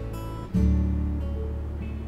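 Background music: acoustic guitar strumming over a steady bass, with a new, louder chord coming in about half a second in.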